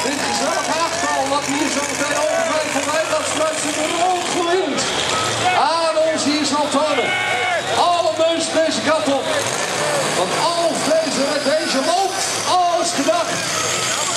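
Loud engine noise from pulling tractors, with a PA announcer's voice over it. Near the end a high whine starts to rise.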